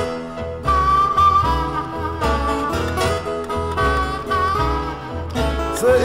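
Blues band playing an instrumental stretch between sung lines: steady low bass notes under held lead notes. A singing voice comes back in at the very end.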